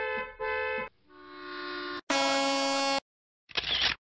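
Vehicle horn sound effects: a quick double honk, then a horn swelling in, then a loud steady horn blast about a second long. A short burst of hiss follows near the end.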